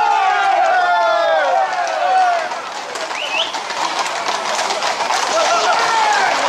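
Several men shouting over one another for the first two seconds or so, then a dense clatter of shod horse hooves and running feet on the road, with more shouts near the end.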